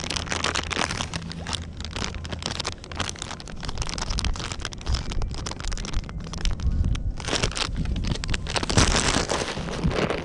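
Plastic bait bag crinkling and rustling in the hands, mixed with wind on the microphone. From about seven seconds in, heavier low rubbing and handling noise is heard against the microphone.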